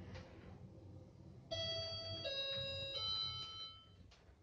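An Ecomaks elevator's electronic chime sounds three notes, each about three-quarters of a second long, as the car reaches the top floor. A low, steady hum from the lift car lies under it.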